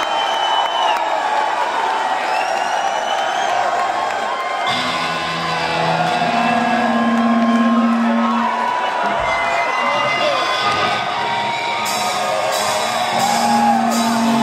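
Rock concert crowd cheering, whooping and whistling between songs. A low note held on stage rings out from about five seconds in for a few seconds, and again near the end.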